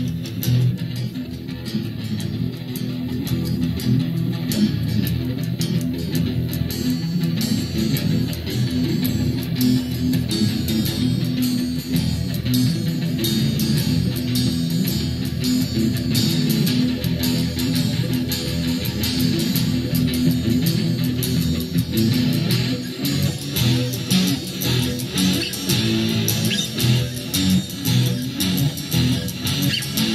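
Instrumental break in a song: guitar playing over bass, with no singing. The playing becomes more rhythmic and pulsing in the last third.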